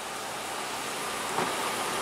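Steady running noise of a parked Nissan March idling with its air conditioning on: an even hiss-like hum with no distinct knocks or tones.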